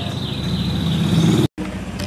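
Low engine rumble of a motor vehicle, growing louder for about a second and a half, with a steady high chirping tone above it; the sound cuts out abruptly for an instant about one and a half seconds in.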